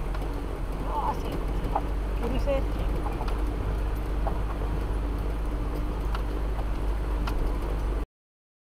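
A vehicle driving along a rough dirt and gravel road, heard from inside the cab: a steady low rumble of engine and tyres with scattered knocks and rattles over the stones.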